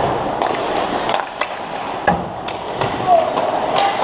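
Ice hockey play around the net: skate blades scraping and carving on the ice, with several sharp clacks of sticks and puck, and short shouts from players.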